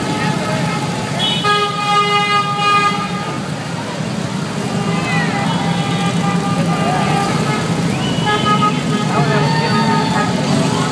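A procession of Harley-Davidson motorcycles rumbling past at low speed, their V-twin engines making a steady low drone. Just over a second in, a horn sounds one held note for about a second and a half, and spectators' voices shout over the engines in the second half.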